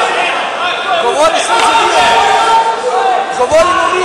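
Several men shouting short coaching calls ("Evo!") over one another from the mat side, with a single thump about three and a half seconds in.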